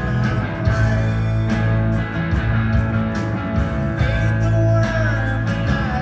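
Live rock band playing a song: guitar over bass and drums, with regular cymbal hits and a few bent notes.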